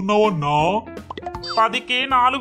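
A cartoon character's voice speaking in short phrases over light background music.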